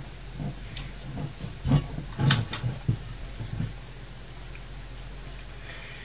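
Light knocks, clicks and rustles of a computer power supply's circuit board and its wiring being handled and lifted out of its metal case, clustered in the first half or so, over a faint steady low hum.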